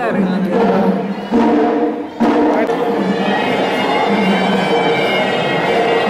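Reedy wind-instrument music, a steady piping drone with higher held tones coming in about two seconds in, mixed with voices.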